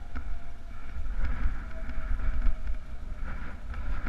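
Wind buffeting the microphone of a camera on a bike descending a rough, stony track, with the rattle and clatter of the bike and its tyres over the stones.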